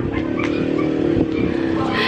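A steady mechanical hum holds at an even level throughout.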